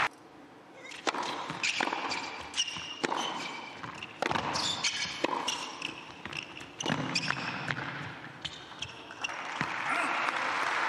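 Tennis rally on an indoor hard court: sharp racquet strikes and ball bounces about once a second, with short squeaks of shoes on the court between them. Near the end, applause starts to rise as the point is won.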